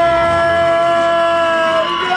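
A woman's long, held yell of celebration, a drawn-out "yeah!" kept at one high pitch, breaking off near the end and at once starting again.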